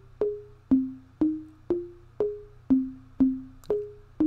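Audio Cipher V2's built-in preview playing the melody it generated from the words "stack that cash" in C minor: a run of short single synth notes, about two a second, each starting sharply and quickly fading, the pitch stepping up and down.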